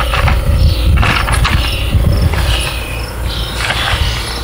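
Gauze being pushed and rubbed into a wet foam yoga-block wound-packing prop, a scratchy rubbing sound over a constant low rumble.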